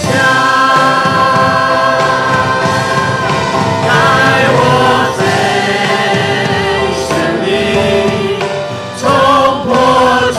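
A worship team of many voices singing a praise song together over a live band, with long held notes.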